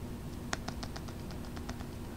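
Faint, quick clicks and crackles of fingers handling a hard plastic graded-card slab in its clear plastic sleeve, starting about half a second in.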